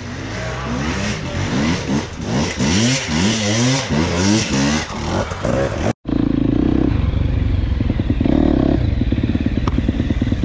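Enduro dirt bike engine revving up and down over and over, its pitch rising and falling with each blip of the throttle. About six seconds in the sound cuts out for an instant, then the engine runs on steadily with short pulses of throttle.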